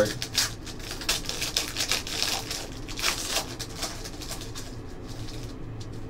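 Trading-card pack wrapper crinkling and tearing as it is opened by hand, with cards rustling as they slide out; busiest in the first few seconds, then only light handling.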